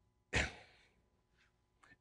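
A man's short, sharp breath close to a clip-on microphone, about a third of a second in and fading quickly. Near silence follows, with a faint intake of breath just before speech resumes.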